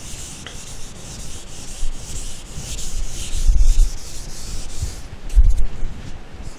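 Whiteboard eraser wiping across a whiteboard in repeated hissing strokes, with a couple of dull low bumps about three and a half and five and a half seconds in.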